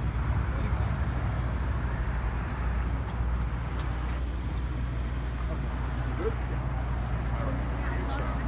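Steady low rumble of an idling vehicle engine, with faint indistinct voices of people standing around.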